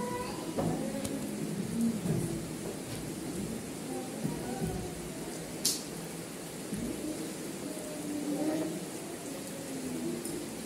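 Indistinct voices with no clear words, in short scattered fragments over a steady background hiss. A short, sharp high-pitched sound comes a little over halfway through.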